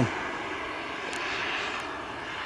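80-newton Swiwin 80 model turbine jet engine of a flying RC jet, a steady hiss with a faint high whine heard from the ground.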